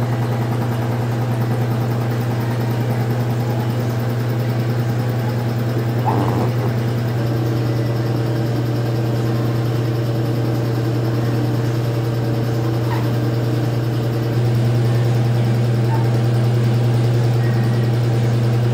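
A steady, low mechanical hum, like a motor running without a break. It gets a little louder about fourteen seconds in.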